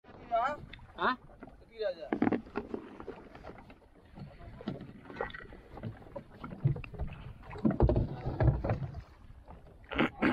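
Wind and water on a small open fibreglass fishing boat drifting at sea, with short calls from the men aboard in the first couple of seconds and heavier low rumbles later on.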